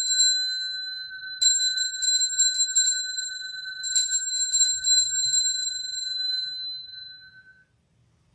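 Altar bells (sanctus bells) shaken in quick peals of ringing strikes at the elevation of the host after the consecration. A fresh peal starts about a second and a half in and another about four seconds in, and the ringing fades out near the end.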